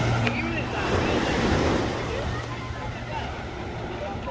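Beach surf: small waves washing onto the shore, with distant voices of people in the water and wind on the microphone. A low hum fades about two seconds in.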